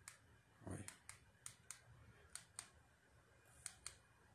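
Faint, sharp clicks of a remote control's buttons being pressed, about eight of them at irregular intervals, some in quick pairs.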